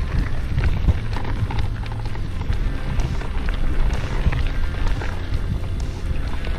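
Mountain bike rolling along a gravel track, heard from a camera on the rider: a steady low rumble of wind on the microphone and tyres on gravel, with small clicks and rattles from the stones and the bike.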